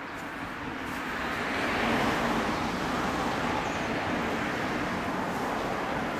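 Road traffic: vehicle noise that swells over the first two seconds and then holds steady as a continuous rushing sound.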